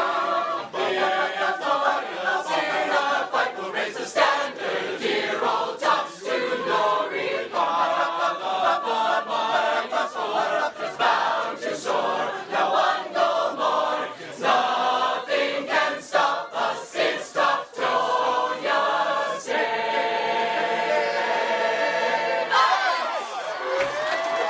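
A group of players' voices singing a team chant together in a huddle, many voices at once with sharp hits through it, ending on a held chord a few seconds before the end.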